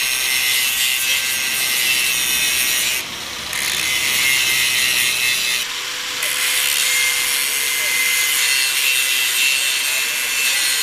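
Electric angle grinder with an abrasive disc grinding a steel square-tube frame: a steady, high-pitched hiss and whine of the disc on metal. It eases off briefly twice, about three seconds in and again just before six seconds.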